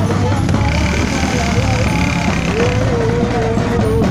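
Street-parade din: marchers' voices and chanting over drumming and music, with a motorcycle engine running low underneath. A steady high tone sounds from about half a second in for about two seconds.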